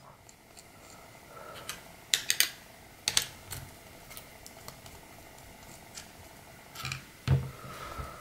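A few small, sharp clicks and taps of a Phillips screwdriver and the plastic and metal parts of a Tokyo Marui Glock 18C airsoft pistol being handled while a screw is taken out of the back of the frame: a quick cluster a little after two seconds, one about three seconds in, and two more near the end.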